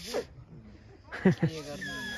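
A leaf held between the lips and blown as a whistle, giving short squeaky notes that slide steeply down in pitch about a second in and a thin high note near the end.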